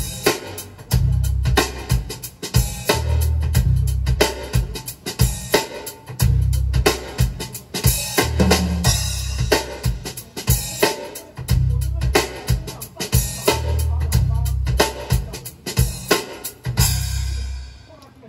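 Drum-kit recording played back through a pair of Jamo 707 floor-standing loudspeakers: kick drum, snare and cymbals hit in a dense, driving pattern, with the kick recurring about once a second.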